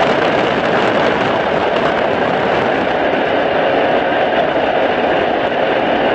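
Steady roar of a jump plane in flight with its side door open: engine noise and rushing slipstream wind through the doorway, loud and unbroken.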